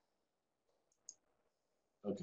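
Near silence with a single faint click about a second in.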